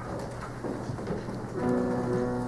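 Low rustling and shuffling of a gathered group, with faint murmuring. About one and a half seconds in, a piano begins playing sustained chords.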